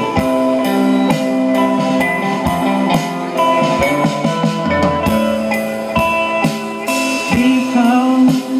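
Live indie dream-pop band playing through a PA: electric and acoustic-electric guitars ringing out over a drum kit keeping a steady beat of about two hits a second.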